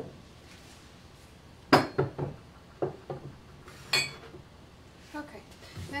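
Ceramic pottery pieces being set down on wooden shelves: a handful of sharp knocks and clinks, the loudest about two seconds in, and one near four seconds in that rings briefly.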